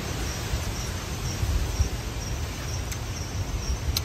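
Night insects chirping, a faint high chirp repeating about twice a second, over a steady low rumble.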